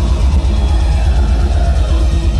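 Deathcore band playing live through a loud festival PA, heard from the crowd: distorted guitars over fast, dense drumming with a heavy low end.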